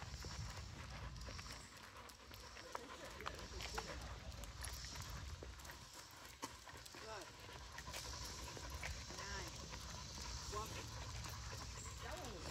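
Faint footsteps on a paved path and a leashed dog walking alongside, panting lightly.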